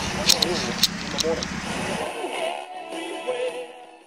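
Indistinct voices and music over a low rumble, with a few sharp clicks in the first second and a half. The sound fades away toward the end.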